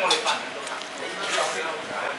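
Background voices of other diners in a restaurant dining room, with a few light clinks of chopsticks against a porcelain bowl.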